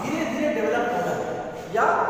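A man's voice lecturing in Hindi; speech only, no other sound.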